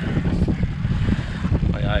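Small fishing boat under way while trolling a line: steady low rumble of the boat and water, with wind buffeting the microphone.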